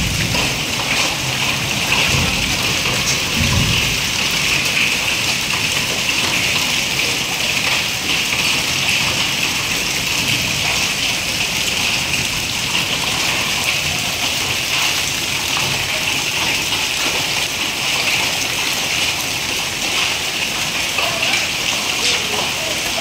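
Heavy rain and hail falling steadily on a wet street, a continuous hiss. There is a low rumble during the first few seconds.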